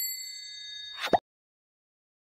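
Subscribe-button overlay sound effect: a notification bell ding that rings for about a second, high and bright, ending with a short click.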